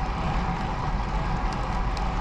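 Steady wind rush on the microphone and tyre noise on pavement from a bicycle being ridden along a paved road.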